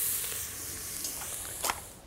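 Pheasant back mushrooms and wild leeks frying in a stainless pot, sizzling and fading away. A short click comes near the end.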